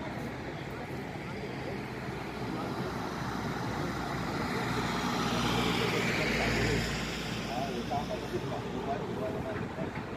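A motor vehicle driving past close by in a city street: its engine and tyre noise swells to a peak about two thirds of the way in, then drops away quickly, over a background of street noise.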